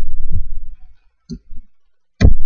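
A low rumble for the first second, then a single sharp click of a computer mouse button, picked up by a laptop's built-in microphone.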